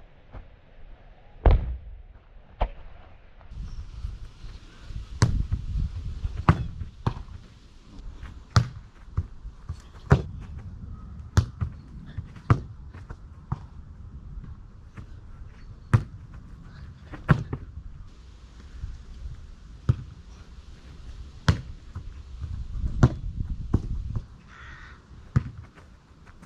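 A football being kicked and juggled on a grass lawn: a run of sharp, separate thuds of foot on ball, about one a second at an uneven pace, over a low rumble.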